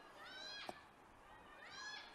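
Two faint, high-pitched shouts rising in pitch, one early and one near the end: a player calling for the ball from across the pitch. A short knock sounds between them.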